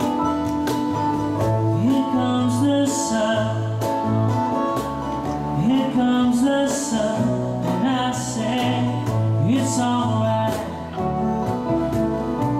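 Live acoustic band music: strummed acoustic guitar with keyboard, electric guitar and light percussion keeping a steady beat, and a male voice singing over it.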